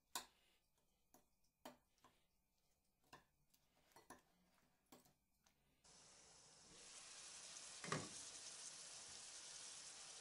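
A few faint clicks of a spoon against a glass bowl as chopped tomato and sauce are stirred. Then a faint sizzle of vegetables frying in a pan starts about seven seconds in, loudest around eight seconds as the glass lid is lifted.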